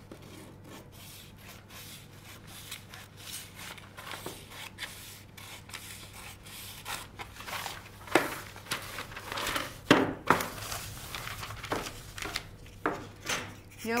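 Large dressmaking scissors cutting through a paper sewing pattern on graph paper: a run of short snips mixed with paper rustling and sliding on the table. There are a few louder rustles about eight and ten seconds in.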